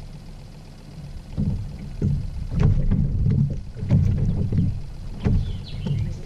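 Irregular low thumps and knocks against a plastic kayak hull, starting about a second and a half in, as a hooked ladyfish flaps and is shaken off the line.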